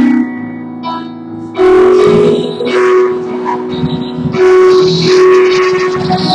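Live worship band music: keyboard chords held at first, then the music gets louder about a second and a half in as more of the band comes in.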